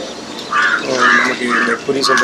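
A man talking in Tamil, his voice close and clear; no other sound stands out.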